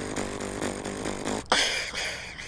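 A female beatboxer's mouth sounds: a held, slightly wavering bass tone for about a second and a half, then a loud, sharp hiss near the end.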